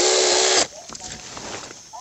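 Cordless mini chainsaw, driven by an RS550 DC motor rewound with doubled winding wire, running with a steady whine as it cuts through a coffee-tree branch, then stopping abruptly about half a second in. The motor keeps its speed through the stringy wood fibres without bogging down.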